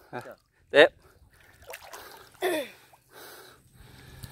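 Short spoken calls, with quieter splashing and trickling of water between them as a gill net is lifted out of a shallow canal.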